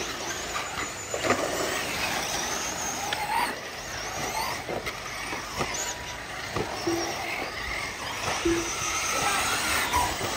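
Nitro-powered 1/8-scale RC truggy engines racing, their high-pitched whine rising and falling as the cars rev through the track, with a few sharp clicks and several short low beeps over it.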